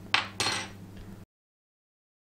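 Two short scraping clinks of a metal teaspoon against a ceramic tea mug in quick succession. The sound cuts off abruptly just over a second in.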